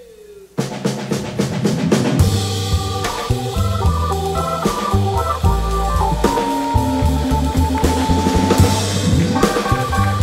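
Live swing band starting a song's instrumental intro: drum-kit hits come in about half a second in, then the full band plays with an organ-sounding keyboard, upright bass and drums keeping a steady beat.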